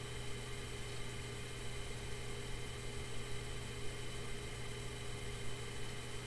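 Steady low hum with an even hiss underneath, unchanging throughout: the background noise of the recording during a pause, with no speech.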